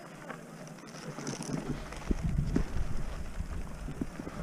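Wind buffeting the microphone and a mountain bike rolling over rough grass and stones, growing louder about a second in, with a heavier rumble and a few knocks from about two seconds in as the bike runs over rougher ground.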